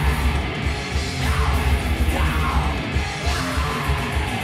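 Live heavy metal band: distorted electric guitars and drums at full volume under harsh yelled vocals, with a few shouted phrases that slide in pitch.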